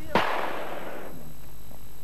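A single rifle shot just after the start, its echo dying away over about a second.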